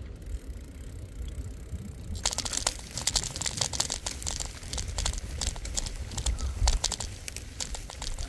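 Bicycle ride with a low rumble of wind on the microphone; about two seconds in, a dense crackling of many quick clicks starts as the tyres leave the pavement and run over dry, patchy grass and sandy ground.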